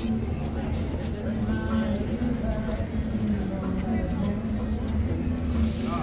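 Casino floor background: faint chatter of distant voices over a steady low hum.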